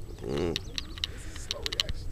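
A person's voice, one short sound about half a second in, over a steady low rumble.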